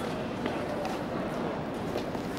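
Steady murmur of distant voices over an outdoor din, with no close speaker.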